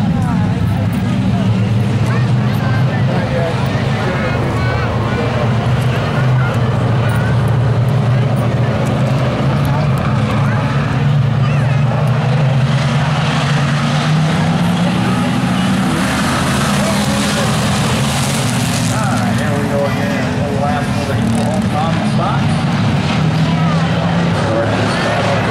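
A pack of hobby stock race cars running at speed around an oval, their engines making a steady low drone that rises slightly in pitch about twelve seconds in.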